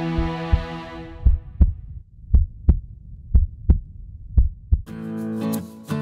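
Heartbeat sound effect in an intro jingle: four low double thumps (lub-dub) about a second apart, following a held synth chord that fades out. Near the end, strummed guitar music begins.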